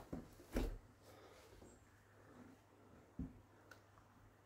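Mostly quiet, with a short bump about half a second in and a softer thump a little after three seconds: handling noise as the scoped spring air rifle is held on aim.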